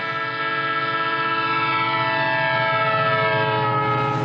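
Train horn sounding one long, steady blast with several tones at once, over the low rumble of an approaching train.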